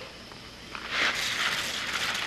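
Tap water running into a cooking pot, starting about a second in as a steady hiss.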